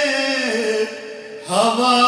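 A man singing a naat, an Urdu devotional hymn, in long held notes with ornamented glides. One phrase ends just under a second in, and a new one begins with a rising note shortly after.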